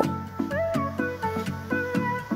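Background music: a light instrumental tune of short pitched notes, with one note that slides up and back down about half a second in.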